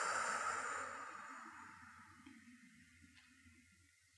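A long out-breath fading away over about two seconds, then near silence.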